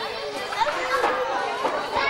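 Overlapping chatter of several children's high voices, with no single speaker standing out.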